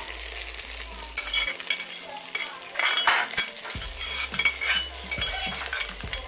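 Fried shallots in hot oil tipped from a small pan into a pot of rice porridge, sizzling as they hit it, with repeated short scrapes and clinks as the pan is scraped out.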